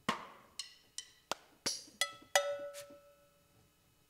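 Single hits from the Abbey Road Vintage Drummer sampled drum kit in Kontakt, about eight of them, roughly three a second. A few ring with a clear pitch, one of them for over half a second, and the hits stop about three seconds in.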